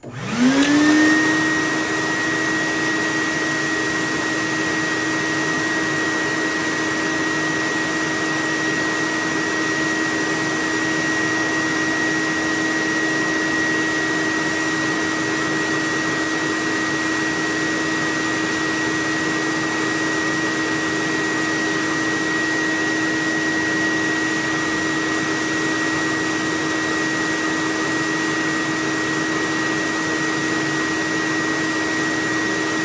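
Shop vac switched on: its motor spins up, rising quickly in pitch over about the first second, then runs with a steady whine and airflow rush, drawing air down through the paint booth's open shelf.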